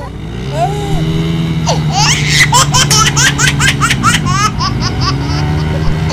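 Motorcycle engines running and revving as a rear wheel spins in soft beach sand, the engine note rising shortly after the start, sagging near the end and picking up again. A person laughs over it, over and over, from about two seconds in.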